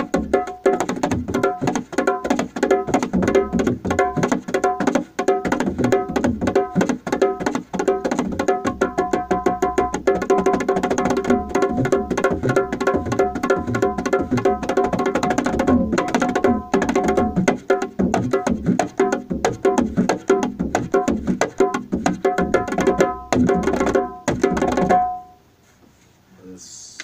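Dholak played by hand in a fast, dense run of strokes, ringing head tones over quick sharp slaps. It stops abruptly about a second before the end on one last ringing note.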